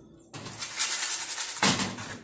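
Dry granola mix of oats, seeds and chopped nuts rattling and sliding in a metal baking tray as the tray is carried and handled, with a louder burst of rattling near the end.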